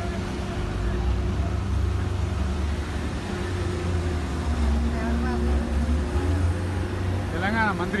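Steady low rumble of dockside heavy machinery as a ship's grab crane unloads bulk cargo, with a dump truck standing by. Voices call out briefly about five seconds in and again, louder, near the end.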